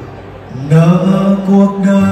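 A man singing a slow Vietnamese ballad into a microphone. His voice comes in strongly under a second in and holds a long low note.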